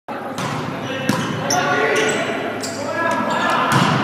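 Volleyball being played on a gym floor: a quick series of sharp knocks of the ball being struck and hitting the hardwood, with players' voices calling out, echoing in the large hall.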